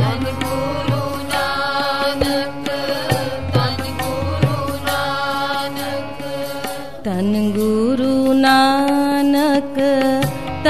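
Sikh Gurbani kirtan music: layered sustained melodic tones with a beat of low drum strokes beneath, and the pitch sliding about seven seconds in.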